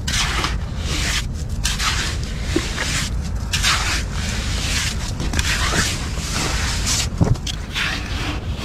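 A hand scraping and scooping dry sand out of a narrow hole, digging down to a large razor clam: a run of repeated scratchy rustles, with a steady low rumble underneath.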